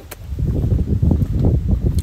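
Wind buffeting a phone's microphone: a loud, irregular low rumble that starts about half a second in.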